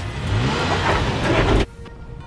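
Toyota Tacoma pickup taking off hard from a standstill, its engine revving up as it pulls away. The sound cuts off suddenly about one and a half seconds in.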